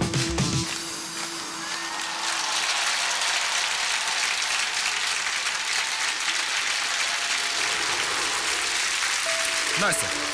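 Pop song backing music cuts off about half a second in, followed by a large studio audience applauding steadily.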